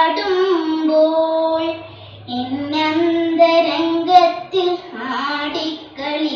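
A young girl singing solo in South Indian classical (Carnatic) style, holding long notes that waver and slide between pitches. She pauses for a breath about two seconds in, then sings another long phrase.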